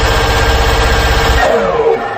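Minigun (rotary machine gun) sound effect firing in a continuous rapid stream. About one and a half seconds in the firing stops and the barrels spin down with a falling whine.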